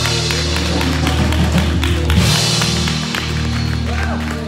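Worship music: held bass notes under a steady tapping beat.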